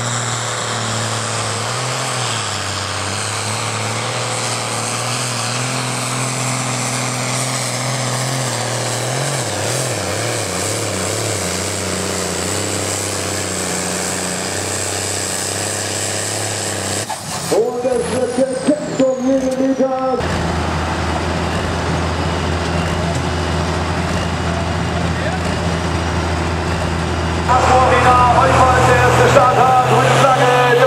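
A Case pulling tractor's diesel engine runs hard under load as it drags the weight sled, its pitch sagging about a third of the way in. Later a second tractor's engine idles steadily at a lower pitch, and a voice comes over loudspeakers twice, once for a few seconds past the middle and again near the end.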